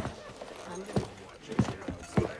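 Quiet passage without music: irregular sharp knocks, about five in two seconds, with faint voices.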